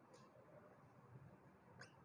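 Near silence with faint squeaks of a marker pen writing on a whiteboard, once just after the start and again near the end.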